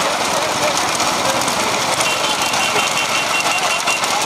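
Steady loud running of the engines of the vehicles following a bullock-cart race, mixed with wind noise and shouting voices. About halfway through, a high, evenly pulsed beeping joins in.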